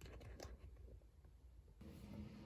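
Near silence, with a few faint soft rustles of a fleece blanket being gathered up near the start.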